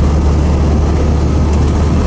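Engine and running noise heard from inside the cab of a utility vehicle being driven: a loud, steady low drone.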